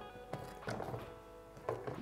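Soft background music with sustained notes, with a few light knocks as a hiking boot is set into a metal semi-automatic crampon on a wooden table.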